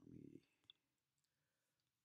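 Near silence, opening with a brief low voice sound, then a single faint computer mouse click a little under a second in.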